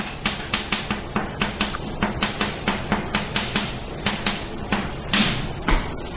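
Chalk writing on a blackboard: a quick run of sharp taps and short scrapes, about five a second, thinning out near the end.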